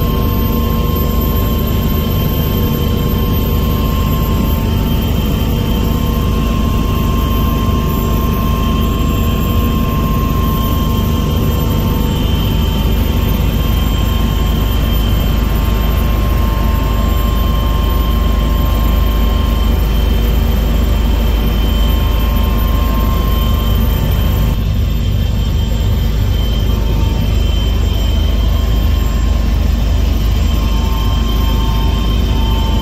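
Steady engine drone inside a small aircraft's cabin in flight: a deep, even rumble with a few steady whining tones over it, unchanging throughout.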